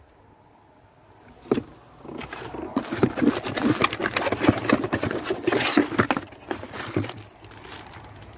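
A single click, then several seconds of crinkling and rustling of a cardboard box and a plastic bag as a bagged bundle of wires is pulled out, easing off near the end.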